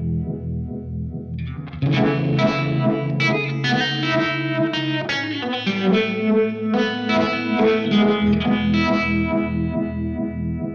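Electric guitar played through a Uni-Vibe-style vibe pedal. Chords ring with a steady, even pulsing throb, and a louder strummed passage comes in about two seconds in.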